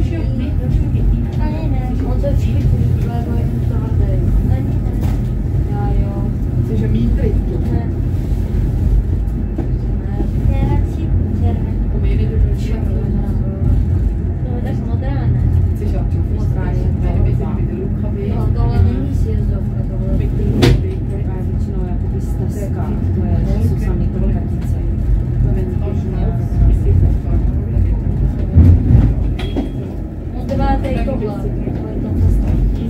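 Steady low rumble of the Stoos funicular car running along its rail track, with people's voices in the background. A single sharp click comes about two-thirds of the way through.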